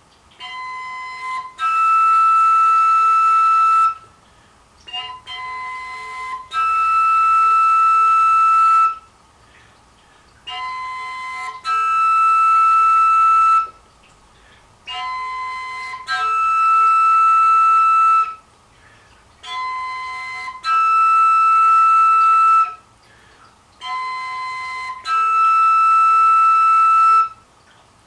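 Koncovka, the Slovak fingerless overtone flute, played with its lower end stopped. It plays a short practice phrase, a brief lower note followed by a long held higher note, and repeats it six times with pauses for breath.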